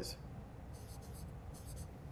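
Felt-tip marker writing on paper flip-chart sheets: several short, faint scratchy strokes.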